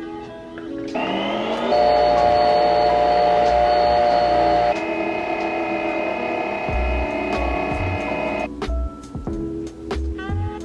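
Background music, with a Nespresso Aeroccino electric milk frother running under it: its motor whirs up about a second in, runs steadily while heating and frothing the milk, and stops shortly before the end.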